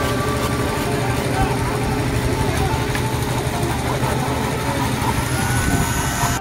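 Construction site noise: scattered voices talking and calling over a steady engine.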